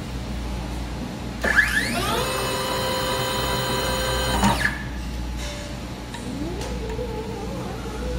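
Wire harness taping machine's rotating taping head spinning up with a rising whine about a second and a half in. It runs steadily for about two and a half seconds while winding insulation tape around the wire, then stops suddenly. A fainter rising motor tone follows near the end.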